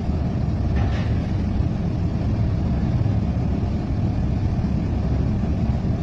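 A steady low rumble of background noise, with a faint voice about a second in.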